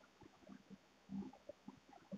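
Near silence, broken by faint, short, irregular scratches and taps of a marker writing on a whiteboard.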